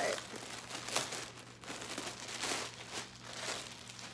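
Clear plastic bag crinkling irregularly as a hoodie is unwrapped and pulled out of it, thinning out near the end.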